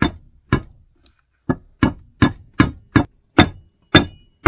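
Soft-faced mallet striking the end of a shaft in a Kubota mini tractor's bevel gear housing to drive it out: about nine sharp knocks, two at first, then after a short pause a quicker run of two or three a second.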